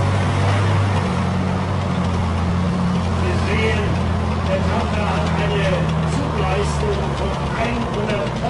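Heavy military diesel engines straining at full load in a tug of war: a steady, deep drone that starts suddenly. Black smoke is pouring from the eight-wheeled truck. Voices call out over it a few times.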